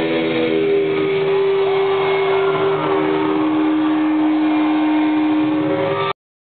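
Live rock band heard loudly from backstage: long held, sustained notes, one giving way to a lower one about halfway through, over a dense noisy wash of amplified sound.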